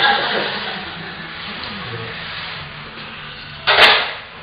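Faint voices in a gym hall, then about three and three-quarter seconds in a single short, loud smack.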